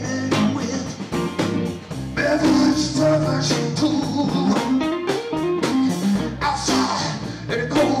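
Live blues-rock band playing: a man singing over electric bass, electric guitar and drums.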